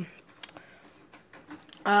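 A few soft, short clicks of the buttons on a handheld LED lamp remote control being pressed to change the lamp's brightness. The loudest click comes about half a second in, and a voice starts near the end.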